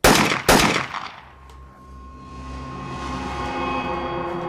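Two gunshots about half a second apart, ringing out briefly. From about two seconds in, low sustained dramatic music swells in.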